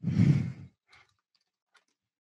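A person sighs into a headset or computer microphone, one breathy sigh about half a second long at the start. It is followed by a few faint keyboard taps as text is typed.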